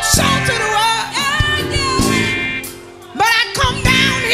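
Female gospel quartet singing live through microphones, voices in harmony with sustained, bending notes. The sound falls away briefly about two and a half seconds in, then the voices come back loudly.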